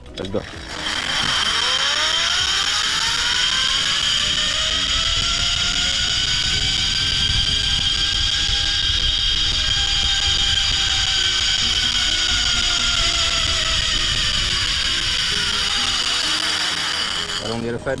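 Zipline trolley's pulley wheels running along the steel cable: a steady whirring whine that starts about a second in, climbs in pitch as the rider gathers speed, then sinks again as he slows, and stops just before the end.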